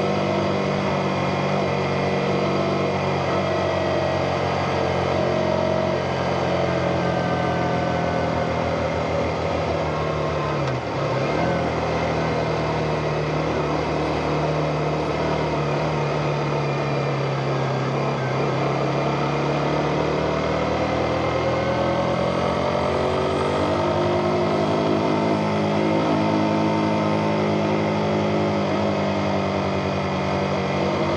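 A motorcycle engine running steadily while riding. Its pitch dips briefly about ten seconds in, sags slowly, then climbs again in the second half as the speed changes.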